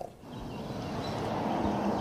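Steady outdoor background noise, an even low rush with no distinct events, rising in level over the first half-second.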